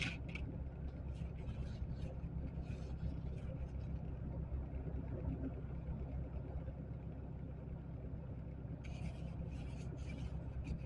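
A car engine idling steadily, heard from inside the cabin, while snow is swept and scraped off the windshield glass in short strokes during the first few seconds and again near the end.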